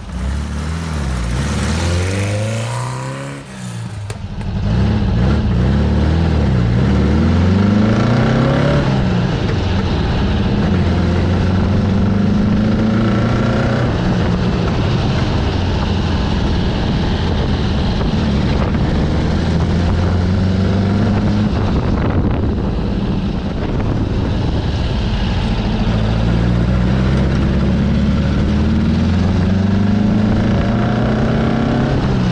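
Porsche 914's air-cooled 1.7-litre flat-four on dual 40 Weber carburettors pulling away and accelerating, rising in pitch several times with a brief dip between, then running at a steady cruise with small rises and falls in revs.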